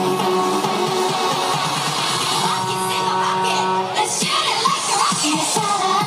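Upbeat K-pop dance-pop song with female group vocals and a steady bass line.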